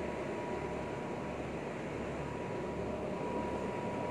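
Steady rushing background noise with a faint, steady high whine running through it.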